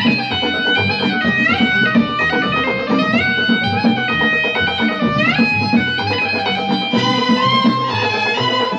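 Instrumental passage of an Arabic orchestra: electric guitar and synthesizer keyboard with a violin section play a melody with repeated upward slides over a pulsing bass.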